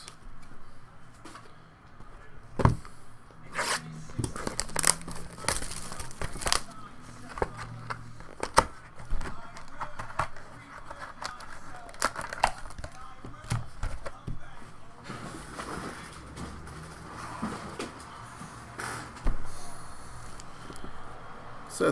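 Trading-card packs and cards being handled: wrapper crinkling and tearing, with many scattered sharp clicks and snaps of cards being flicked and stacked.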